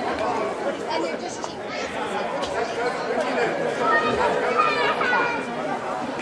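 Spectators chattering in a gymnasium: many voices overlapping at once, with no single speaker standing out.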